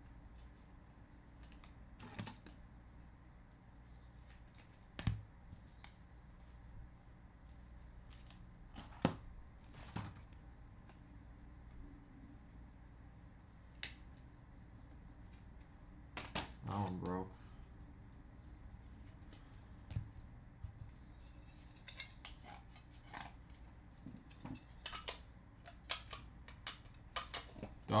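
Clear plastic trading-card holders being handled and set down: scattered sharp clicks and taps a few seconds apart, then a quicker run of small clicks over the last few seconds.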